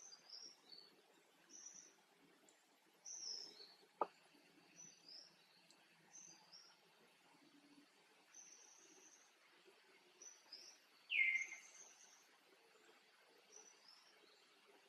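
Faint bird chirps: short high notes repeated throughout, with one louder call falling in pitch about eleven seconds in. A single sharp click about four seconds in.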